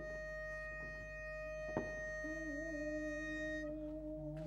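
Pitch pipe sounding one steady note for nearly four seconds, giving the quartet its starting pitch; from about halfway a singer hums along on a lower note, wavering slightly as he settles on it. A single sharp click a little before the hum begins.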